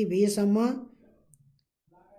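A person's voice speaking for under a second, then near silence with a couple of faint clicks.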